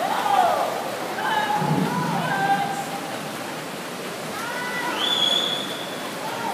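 Spectators yelling to cheer on a swimmer, with long drawn-out shouts over the steady wash of noise in a pool hall.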